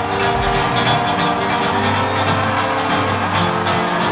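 A live metal band comes crashing back in at full volume after a brief gap: heavy distorted electric guitars, bass and pounding drums playing the song's riff.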